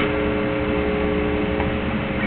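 Box fan running with a steady whooshing hum, while a guitar chord is left ringing and fades out near the end.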